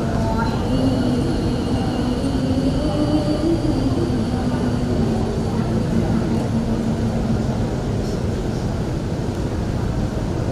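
A woman's melodic Quran recitation (tilawah) through a microphone, its ornamented phrase trailing off within the first second and followed by a faint held tone, over a constant low rumble of room and PA noise.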